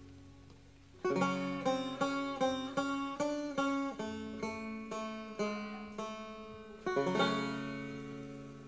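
A banjo played solo. After about a second of near quiet, it picks out a melody in single plucked notes, roughly three a second, each dying away fast. A last stronger pluck near the end rings on and fades.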